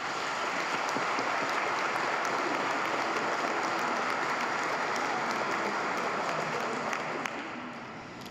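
Congregation applauding in a large church, a steady dense clapping that fades out near the end.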